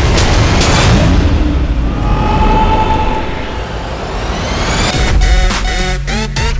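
Trailer sound design: a loud boom at the start that dies away over a few seconds, with a held tone partway through, then electronic dance music with a heavy beat kicks in about five seconds in.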